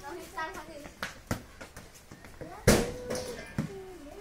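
A small football being kicked and bouncing on hard dirt, with several sharp thuds, the loudest about two-thirds of the way through, amid children's voices.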